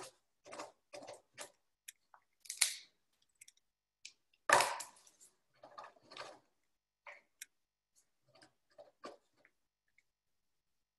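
Irregular short clicks and knocks over an open conference-call line, with one louder knock about four and a half seconds in.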